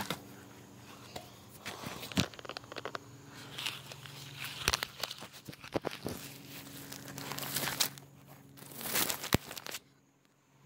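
A phone being handled and moved: rustling and scraping against the microphone with many sharp knocks and bumps, over a faint steady low hum. It goes abruptly quiet near the end.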